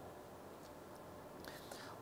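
Near silence: faint hall room tone during a pause in speech.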